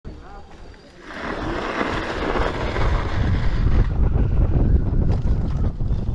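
Wind rushing over the microphone of a moving electric scooter, loud from about a second in, with a heavy low rumble taking over in the second half as it rides onto rough grass.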